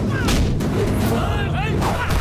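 Film fight-scene sound effects: a rapid string of heavy punch and kick impacts, each with a whoosh, over a constant deep rumble of background score.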